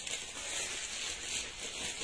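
Soft, steady rustling of clothing fabric as a jacket is pulled on and handled.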